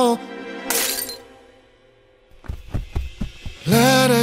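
The song stops and about a second in comes a short crash, like glass shattering, that dies away quickly. After a near-quiet pause there is a run of soft, irregular knocks and rustles before the singing comes back in near the end.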